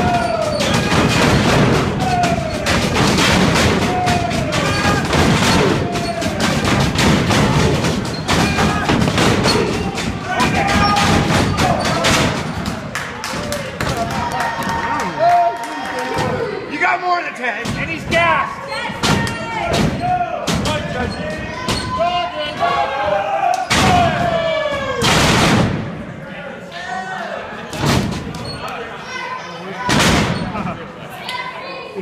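Wrestlers' bodies hitting the wrestling ring's canvas and each other: repeated sharp thuds and slaps, over shouting and chanting from a live crowd in a large hall. The impacts and shouting thin out near the end.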